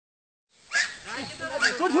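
Men's voices shouting excitedly in Hindi, beginning about half a second in, with calls of "pakad, pakad" ("grab it, grab it").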